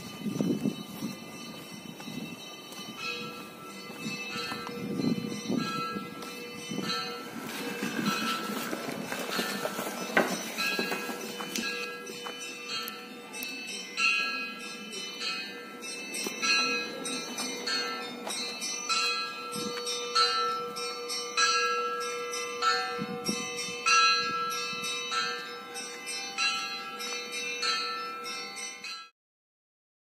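A quick, regular melody of ringing bell tones, many notes overlapping as they ring on, cutting off abruptly near the end.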